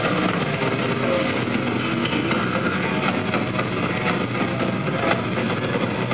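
Hardcore metal band playing live: heavy electric guitar and band in a dense, steady wall of sound.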